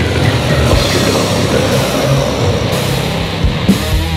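Doom death metal band playing: distorted electric guitars over bass and drums, with low drum hits through the dense wall of guitar.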